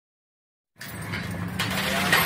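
Folding steel shop gate being pulled open, its slats and rollers rattling and scraping along the track, starting suddenly a little under a second in.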